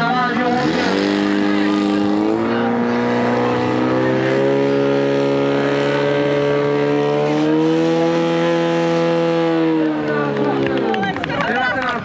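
Portable fire pump's engine revving hard and held at high revs while it pumps water through the attack hoses, its pitch stepping up twice and then dropping back near the end.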